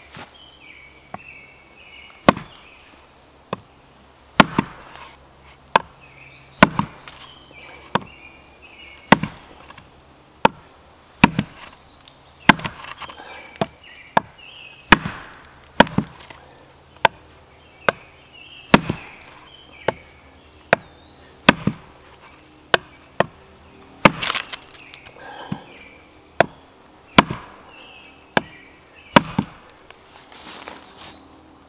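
Wooden baton striking the back of a Gränsfors Bruk Outdoor Axe head, a sharp knock about once a second, driving the small axe down into a dry, knotty, well-seasoned log that will not split easily.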